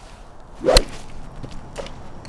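A club swung hard through the air: a brief whoosh that ends in a single sharp crack of a hit, just under a second in.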